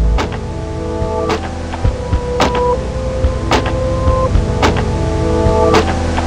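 Instrumental hip-hop beat: held melodic notes over a deep bass line, with a sharp drum hit about once a second.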